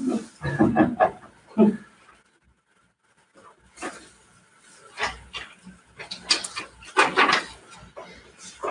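Breathy laughter dying away in the first two seconds, then scattered rustles and light knocks of paper sheets being handled at the tables.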